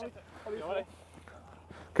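A faint, distant voice calls out once, briefly, a little under a second in, over quiet outdoor background.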